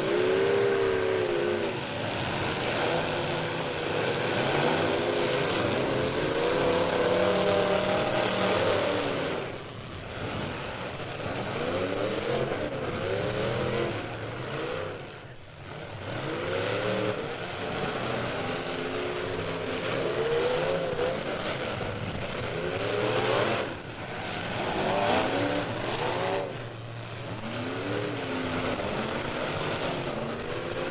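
Engines of several demolition derby cars revving hard and dropping back again and again, their pitch sweeping up and down, as the cars shove and ram into one another.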